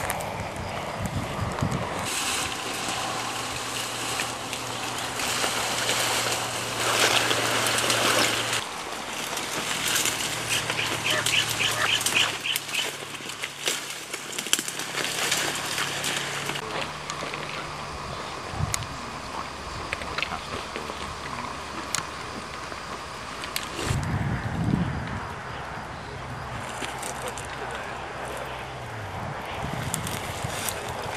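Rustling and wind noise from troops moving through grass and brush, with faint indistinct voices. A low steady hum comes and goes several times.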